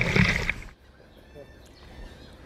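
Loud rushing spray of a flyboard's water jet, cutting off suddenly about half a second in and leaving only much fainter sound.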